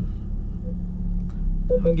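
Jaguar XF's 3.0-litre V6 diesel idling steadily in neutral, heard from inside the cabin as a low hum.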